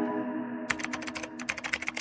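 The last held notes of the music fade out. About two-thirds of a second in, a rapid run of keyboard typing clicks begins: a typing sound effect for text being typed onto the screen.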